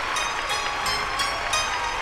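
Studio audience applauding, with a steady musical beat underneath.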